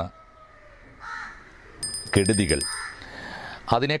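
A crow cawing about a second in, followed by a brief high-pitched ringing chime.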